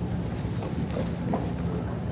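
Footsteps of many people walking across a hall floor, as scattered short clicks over a steady low hum, with brief snatches of voices in the crowd.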